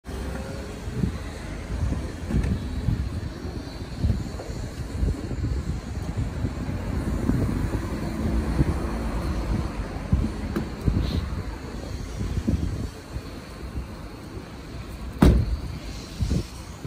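Town street traffic: car engines running and passing, with irregular low thumps from footsteps and the phone being carried while walking. A single sharp knock near the end.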